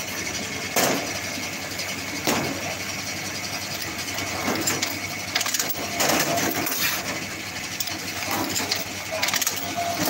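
Semi-automatic box strapping machine running with a steady hum, broken by several sharp clacks and knocks from its strap feed and sealing head, the loudest about a second in and about six seconds in.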